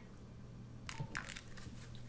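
Faint handling sounds of hands gripping two mobile phones and holding their power buttons, with a few short clicks about a second in, over a low steady hum.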